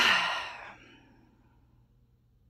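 A person's long, breathy sigh right at the start, fading out within about a second.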